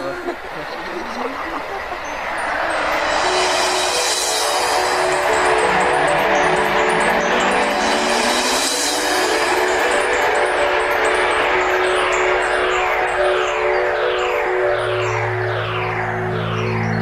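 Shimmering, chime-like magical sound effects for the Teletubbies windmill spinning: a swelling whoosh with held tones, then a run of falling swoops about once a second. A low drone comes in near the end.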